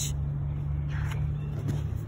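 A low, steady motor hum with one steady tone, which ends shortly before the close.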